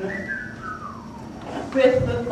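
A single whistled note sliding down in pitch over about a second. A short pitched note follows near the end as the singing resumes.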